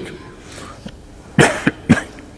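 A man coughing close to a microphone: three quick coughs about a second and a half in, the first the loudest.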